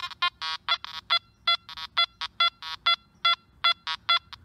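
Nokta Makro Anfibio metal detector in 3-tone mode giving rapid short beeps, about four or five a second, jumping between a higher tone and a lower tone as the coil sweeps over a coin lying next to an iron nail. The jumpy up-and-down response is the nail partly masking the coin's signal.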